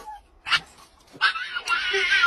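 A dog whining in high, wavering cries that begin a little past the first second, after a short sharp yip about half a second in.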